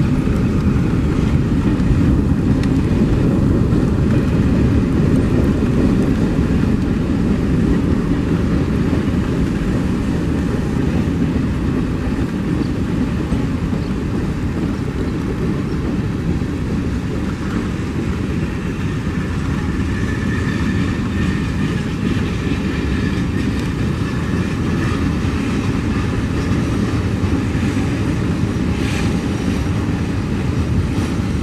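Freight train's boxcars rolling past close by, a steady, loud rumble of wheels on rail.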